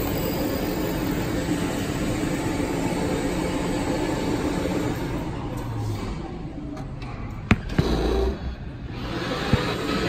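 Key-duplicating kiosk's cutting mechanism running with a steady mechanical whir, easing off past the middle, with a sharp click and a short low thump about seven and a half seconds in.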